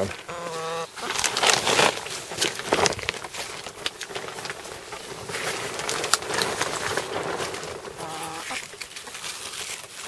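Plastic row cover and cabbage leaves being handled: irregular crinkling and rustling, busiest a second or two in. Two short pitched calls, one at the start and one near the end, break in over it.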